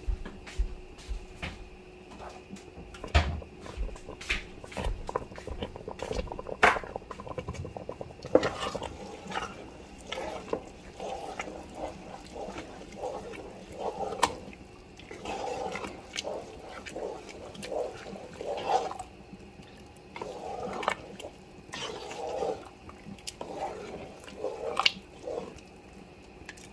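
Macaroni being stirred with a spoon through evaporated milk and melted cheese in a metal pot: wet sloshing and squelching in repeated uneven strokes through the second two-thirds, with scattered sharp clicks and knocks in the first several seconds.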